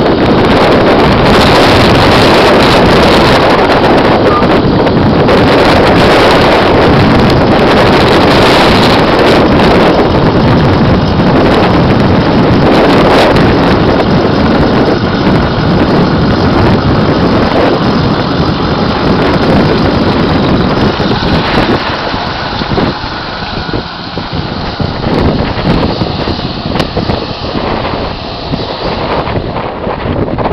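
Heavy wind buffeting on the microphone over the noise of a moving vehicle on the road. It eases off and turns more uneven about two-thirds of the way through.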